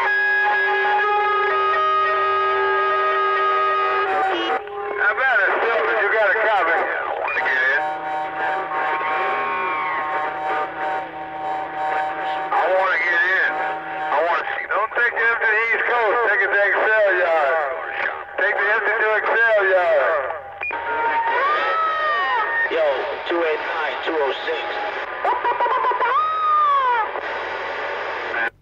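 CB radio receiving another station keyed up and playing an electronic noise toy over the channel. It starts with a few seconds of held steady tones, then runs into warbling sound effects and repeated rising-and-falling whoops, all heard through the radio's speaker.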